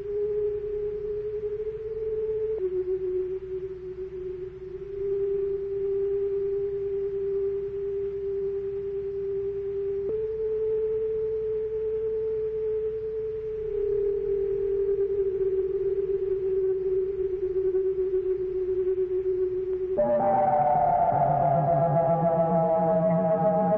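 Electronic music: a single held, pure-sounding tone that steps to a new pitch every few seconds, with a fainter tone an octave above it. Near the end a fuller, louder chord of many tones comes in.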